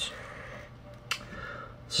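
A pause in speech: quiet room tone with a faint steady hum and one small click about a second in.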